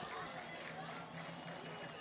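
Faint ambience of an outdoor football ground: scattered distant voices from the pitch and the thin crowd over a steady low hum.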